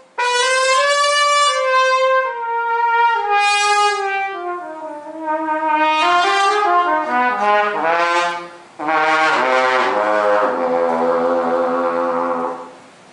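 Harrelson Custom trumpet played solo, unaccompanied: a phrase that steps down from the middle register into the low register. A short breath comes nearly nine seconds in, then low held notes.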